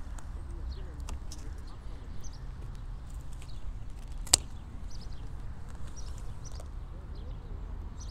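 Bypass pruning secateurs snipping once through a rose cane, a single sharp click a little past the middle, amid faint rustles and ticks of branches being handled over a low steady rumble.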